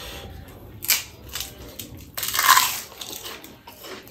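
A crisp fried prawn cracker crunching and crackling, with a sharp crack about a second in and the loudest, longest crunch just past halfway.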